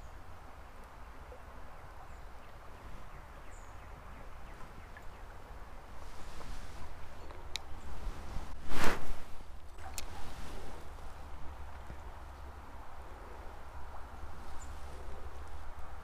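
Creekside outdoor background with a steady low rumble and a faint even hiss of flowing water, broken about nine seconds in by one brief, loud rustling burst with a few sharp clicks around it.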